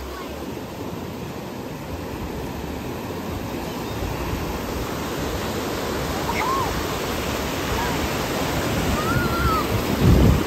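Ocean surf breaking and washing up the shallows, a steady rush of water that grows gradually louder.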